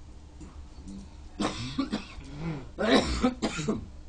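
A person coughing: a short bout about a second and a half in, then a louder run of two or three coughs about three seconds in.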